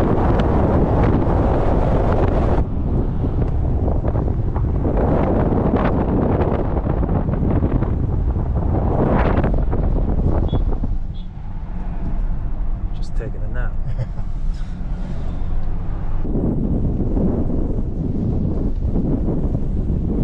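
Wind rushing over a camera mounted outside a moving 2002 Dodge Ram pickup, with the truck's engine and tyre noise underneath. The sound changes abruptly at a few cuts and is quieter for a stretch in the middle.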